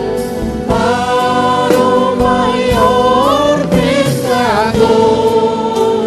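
Live gospel worship music: voices singing together over a band with strummed acoustic guitar, with wavering held notes in the singing.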